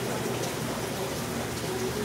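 Steady, even splashing hiss of water circulating and bubbling in aquarium tanks.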